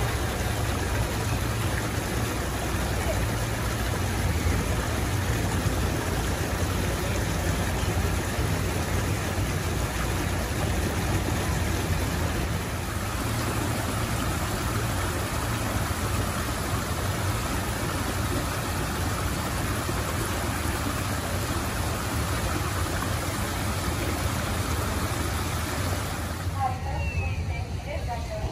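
Small rocky stream cascading over stones, a steady rush of running water that drops away near the end.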